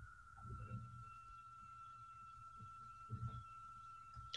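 Near silence: a faint steady high-pitched tone, with a couple of faint low murmurs about half a second in and just after three seconds.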